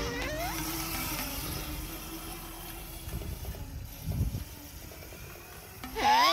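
A kids' mini motorbike running with a steady hum as it rides along; a short thump about four seconds in.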